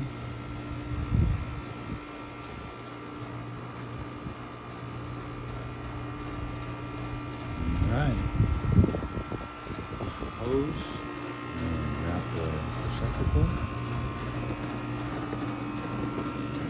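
A steady mechanical hum, broken a few times by short stretches of low, murmured speech.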